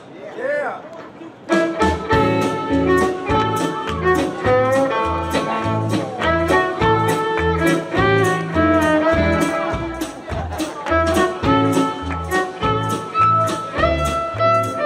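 Country western swing band starting up live about a second and a half in, after a brief voice. A bowed fiddle carries the melody over guitar, bass and drums keeping a steady beat.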